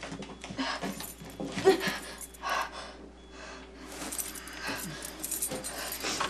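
A woman breathing hard and straining in short uneven bursts as she struggles against wrist restraints on a chair, with rattling of the restraints and chair. The sound grows denser and hissier in the last two seconds.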